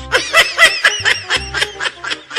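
Laughter in quick, short repeated bursts, several a second, with the pitch arching on each burst.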